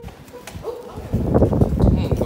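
A loud wordless vocal sound, a person's voice, breaking out about a second in after a quieter start.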